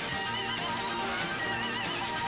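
Live pop-rock band playing at full volume, a high lead line wavering with wide vibrato over the band's steady accompaniment.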